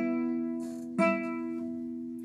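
Nylon-string classical guitar: the same chord plucked twice, about a second apart, each left to ring and fade.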